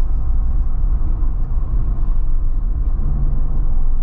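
Steady low rumble of road and drivetrain noise inside the cabin of a 2024 Jeep Wrangler Rubicon 4xe plug-in hybrid cruising at about 30 mph, with a faint hum rising slightly about three seconds in.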